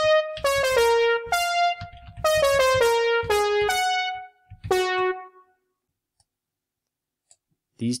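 Sibelius notation software playing back a short melody in a piano-like electronic tone: about a dozen single notes over five seconds, each decaying quickly, then it stops.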